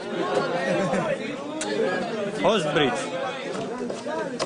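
Several men talking at once: overlapping chatter in a room.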